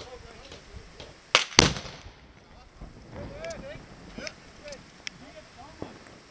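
Two sharp gun blasts from Prangerstutzen, heavy ceremonial guns fired with black-powder blanks, a quarter second apart. The second is the louder and trails off in a rumbling echo.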